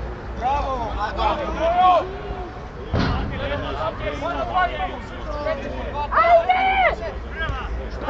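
Players and coaches shouting across a football pitch, the loudest call about six seconds in, with a single dull thud about three seconds in.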